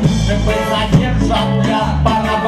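Live reggae band playing, with drum kit, a repeating bass line and electric guitars under a vocalist singing into a microphone.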